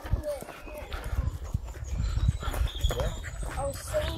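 A dog whining briefly a few times over a heavy low rumble of wind and handling on the microphone.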